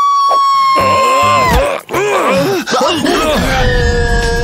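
A woman's long, high-pitched scream, held steady for about a second and a half, followed by wavering vocal sounds and, near the end, a lower held cry.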